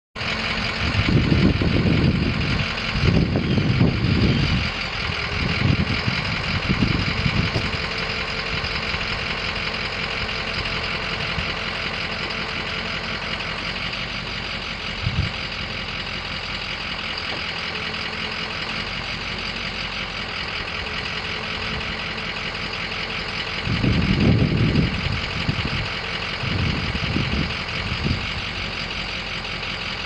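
A Ford 6.0L Power Stroke V8 diesel engine in a 2004 F550 Super Duty idling steadily. Louder low rumbles come and go near the start and again near the end.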